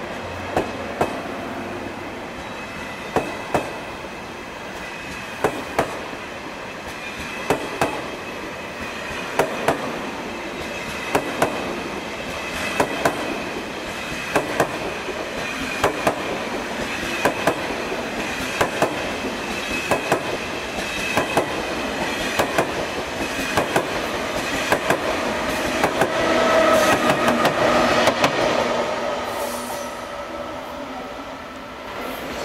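KTX-I high-speed trainset rolling slowly past, its wheels clicking over the track in pairs about every two seconds above a steady running noise. The sound swells louder with steady tones near the end.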